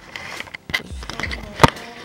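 Handling noise from a camera being moved and positioned: irregular knocks, bumps and clicks against its body, the sharpest click about one and a half seconds in.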